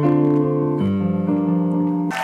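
Grand piano played in sustained chords, the harmony changing a little under a second in and again soon after.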